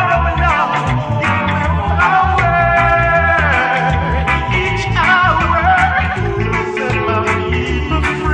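Reggae song playing: sung vocals with harmonies over bass and drums in a steady beat.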